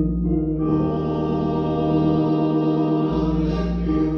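A men's choir singing in long held chords, accompanied by a church organ with deep bass notes.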